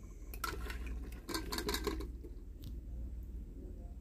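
Raw potato chunks tipped from a steel bowl into a pot of curry sauce: a run of clattering knocks for about a second and a half, then a single metal knock, over a low steady hum.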